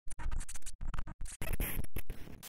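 Digital glitch and TV-static sound effect: choppy bursts of distorted noise that cut in and out several times, ending in a longer, louder burst of static.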